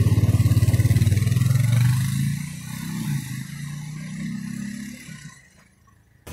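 Police ATV's engine running close by with a rapid low pulsing, loudest in the first two seconds, then fading away over the next few seconds until it is gone just before the end.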